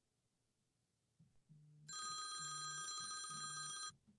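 Phone call ringing: a shrill electronic ring of several steady high tones for about two seconds over a low, evenly pulsing beep. It cuts off suddenly near the end as the call is hung up.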